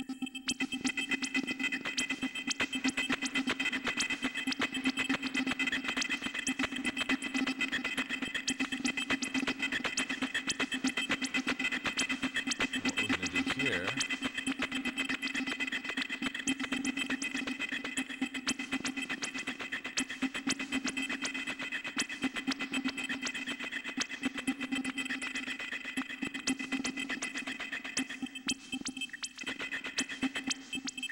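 Glitchy IDM drum pattern playing from a Reason 4 Redrum drum machine through DDL-1 delays and Scream 4 distortion: rapid, stuttering clicks over a steady droning tone, thinning out near the end.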